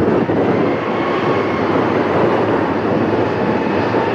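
British Airways Boeing 787 Dreamliner's Rolls-Royce Trent 1000 jet engines running at taxi thrust as the airliner rolls slowly past: a loud, steady jet noise with a faint high whine over it.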